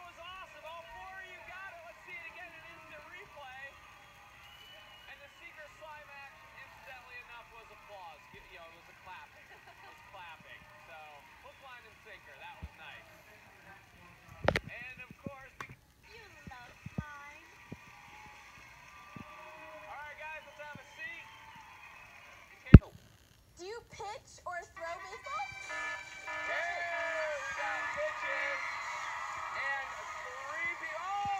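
Game show soundtrack played through laptop speakers: voices over background music, broken by two sharp clicks, one about halfway and a louder one later. For the last several seconds the mix of voices and music grows louder and busier.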